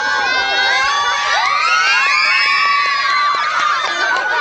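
A crowd of children shouting and cheering together, many high voices at once, swelling to its fullest in the middle.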